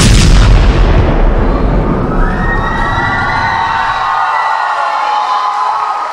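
A hip-hop dance track ends on a heavy bass hit whose boom rings out and fades over about four seconds, while a crowd cheers.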